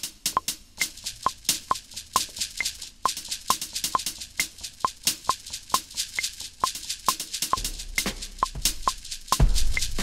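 Drum sounds from a Maschine Mk3 kit played live on its pads while a pattern records: rapid short high percussion hits over a metronome clicking a little over twice a second, with a higher-pitched click on every fourth beat. Near the end a deep, sustained bass drum comes in and is the loudest sound.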